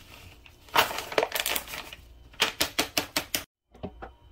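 Packaged muffin mix poured from a crinkly pouch into a bowl: the pouch rustles and crackles as the powder slides out, then about eight quick sharp crinkles in a row as the pouch is shaken empty.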